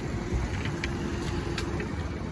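Low, steady rumble of vehicles in a parking lot, with a faint level hum and a few light clicks.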